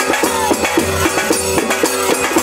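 Folk music led by a hand-played, rope-laced two-headed barrel drum beating a quick steady rhythm of about four strokes a second, with sustained pitched tones running alongside.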